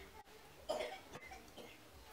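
One short, faint cough about three-quarters of a second in, with the rest quiet.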